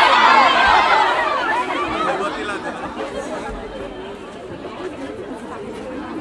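A large crowd of young women chattering excitedly, many voices at once. It is loudest at the start and dies down over the first few seconds into a lower, steady babble.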